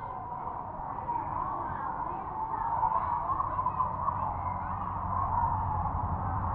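A steady background murmur with indistinct distant voices in it, over a low steady hum.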